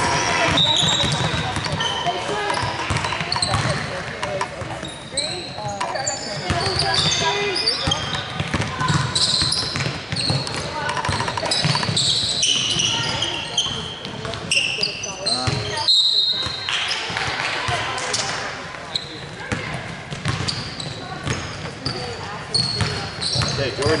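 Live basketball game in a large gym: a basketball bouncing on a hardwood court, sneakers squeaking in short high chirps, and indistinct shouts from players and coaches. The sound cuts out for a moment about two-thirds of the way through.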